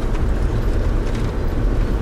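Safari minibus on the move, heard from inside the cabin: a steady low engine and road rumble.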